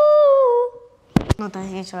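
A girl's singing voice holds one long note that dips in pitch and stops a little under a second in. Two sharp knocks follow, then a child's voice starts speaking.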